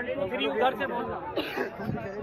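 Several people talking over one another: overlapping crowd chatter.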